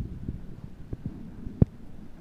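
Low, irregular thumping and rumble on the camera's microphone, with a sharper knock about one and a half seconds in.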